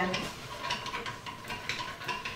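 A hand-cranked stainless-steel pasta machine turning its cutter rollers as a dough sheet is fed through and cut into tagliatelle strands, making a run of light mechanical clicks, several a second.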